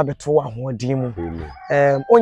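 A rooster crowing, with men's voices talking over it.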